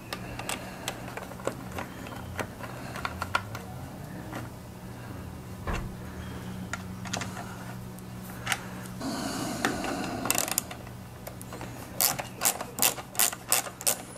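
Hand ratchet clicking while bolts are run into a Tecumseh two-stroke engine, with scattered clicks at first and a quick, louder run of clicks, about four or five a second, near the end.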